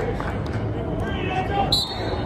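Sound of a football practice in a large indoor hall: voices calling out over a steady low hum, with thuds of feet and pads on the turf. Near the end comes a short, high-pitched tone like a coach's whistle blast.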